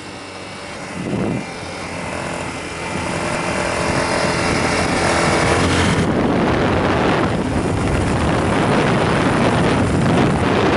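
Motorcycle engine running steadily under way, its hum clear for a few seconds while the wind noise on the microphone drops away; from about six seconds in, loud wind buffeting on the microphone covers it again.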